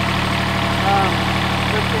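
Diesel engine of a Toro Greensmaster 3250-D ride-on greens mower running steadily at low revs.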